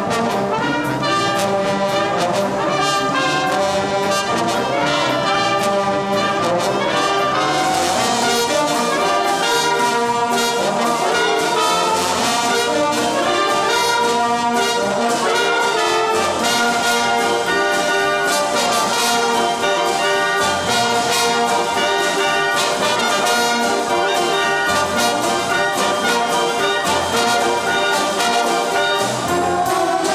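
Brass and wind band (trombones, trumpets, euphonium and saxophones) playing a swing-era big-band number, loud and continuous.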